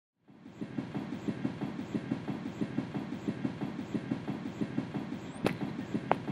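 Opening of an electronic track: a fast, even clattering pulse of about six beats a second, like train wheels on rail joints, fading in at the start. A sharp hit lands about five and a half seconds in.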